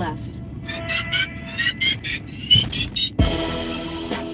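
Hip-hop music playing in a car: a run of short, rising, high-pitched chirps, then about three seconds in the track changes abruptly to steady sustained chords over a low bass hit.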